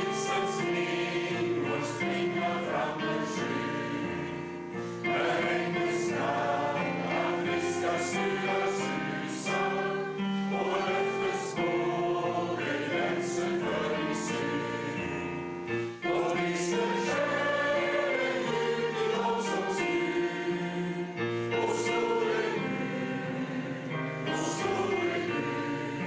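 A congregation singing a Swedish hymn together with keyboard accompaniment, in long held notes with brief pauses between lines.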